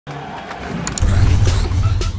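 Sports-broadcast intro sound effects under animated logos: a rushing swell of noise, then a deep bass rumble that comes in about a second in and is the loudest part.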